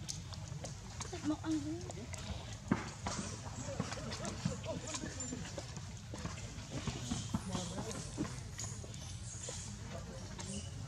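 Low background voices with many small scattered clicks and rustles, and a brief wavering voice-like sound about a second in.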